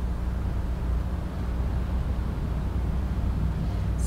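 Room tone: a steady low hum with a faint hiss underneath.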